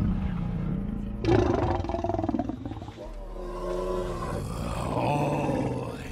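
A loud creature-like roar breaks in about a second in and trails off into long, wavering pitched calls, over a dark, sustained film score.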